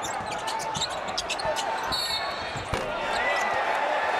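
Live basketball game sound on a hardwood court: the ball bouncing among many short knocks and a few brief high squeaks, over the steady murmur of an arena crowd.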